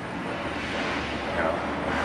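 Hand-held gas heating torch burning with a steady rushing noise.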